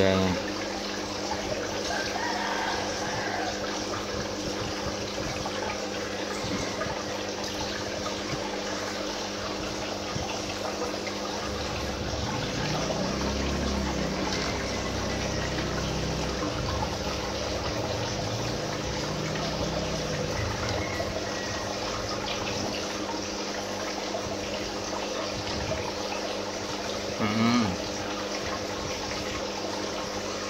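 Submersible aquarium pump running with a steady hum, its outflow splashing and trickling into the tank water.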